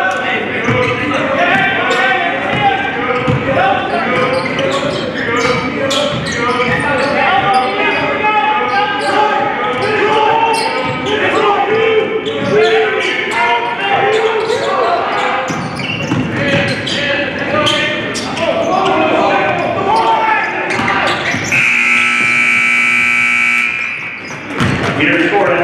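A basketball bouncing on a hardwood gym floor while players and onlookers call out, all echoing in a large hall. Near the end a gym buzzer sounds one steady blast lasting about two seconds.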